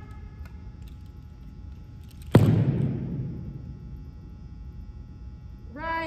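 A single sharp thud against the wooden gym floor about two seconds in, ringing on for over a second in the hall's echo. A drawn-out spoken drill command starts just before the end.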